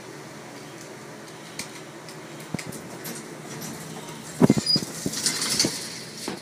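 Elevator car running with a low steady hum, then a sharp clunk about four and a half seconds in as it arrives, followed by the doors sliding open with a hissing rattle near the end.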